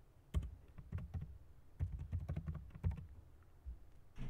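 Computer keyboard being typed on: short runs of keystrokes with brief pauses between them.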